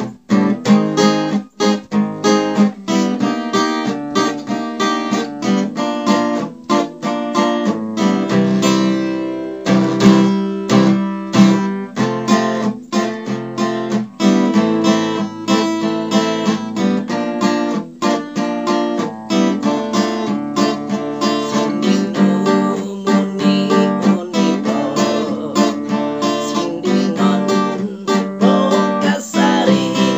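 Solo acoustic guitar playing an instrumental passage of strummed chords and picked notes, unaccompanied.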